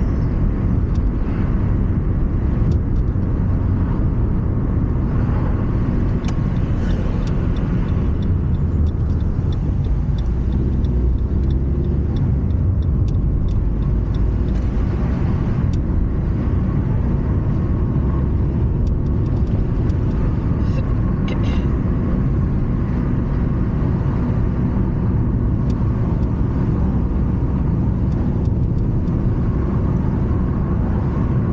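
Steady rumble of a car driving along, heard from inside the cabin: engine and tyre noise.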